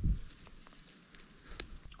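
Faint rustles and a few small clicks of hands working at a young walnut sapling's stem, rubbing off its lower buds, after a short low thump at the start.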